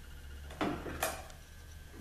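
Two short light knocks about half a second apart from a transmission valve body being handled, over a low steady hum.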